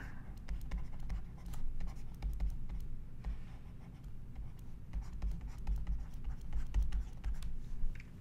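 Stylus scratching and tapping on a drawing tablet as words are handwritten, in many short strokes, with soft low thuds of the hand on the surface.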